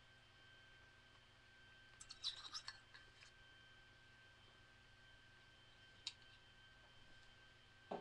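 Near silence with a faint steady high tone; a utensil clinks and clicks a few times against a bowl about two seconds in, with one more single click about six seconds in.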